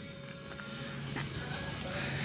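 Faint background music under low room noise.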